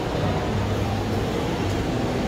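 Steady shopping-mall ambience: a continuous low hum under a wash of background noise, with no distinct events.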